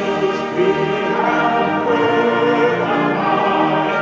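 Live symphonic wind band and mixed choir performing a Christmas arrangement, the choir singing long held chords over the band.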